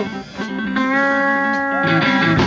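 Live band playing, with an electric guitar holding one long steady note for about a second after a brief lull near the start.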